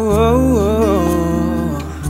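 Music from a Tagalog pop ballad: a male singer holds a wordless "oh woh" vocal run that wavers and bends in pitch, over sustained backing chords and bass. The voice fades out near the end.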